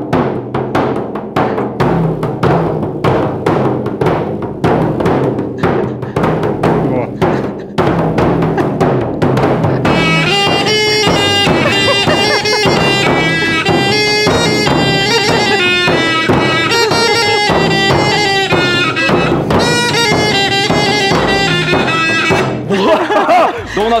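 Two frame drums (buben) struck with beaters in a steady beat. About ten seconds in, a small wind pipe joins with a high melody over the drumming.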